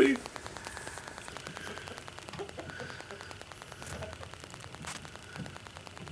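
A faint, steady patter of many tiny clicks, in the manner of rain on a surface, with faint voices far behind it.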